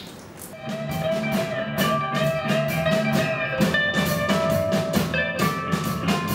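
Band music starts about a second in: a drum kit keeping a steady beat under guitar and a bass line.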